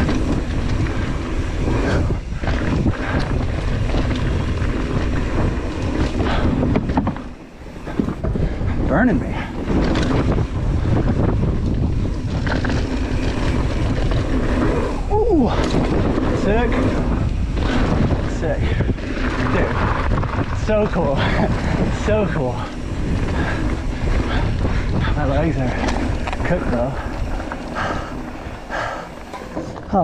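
Wind buffeting the microphone of a mountain bike's camera at speed, mixed with tyres rolling over loose dirt and the bike rattling on a downhill trail. The noise is steady and loud, easing briefly about seven seconds in.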